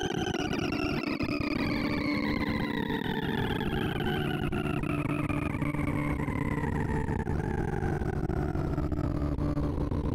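Synthesized sorting-visualizer tones from Smooth Sort working through 2,048 numbers: a dense buzzing tone whose pitch falls steadily as the largest remaining values are pulled into place one after another.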